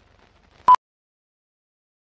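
A single short, loud beep about two-thirds of a second in, the sync 'two-pop' that ends a film countdown leader, over faint film-style crackle.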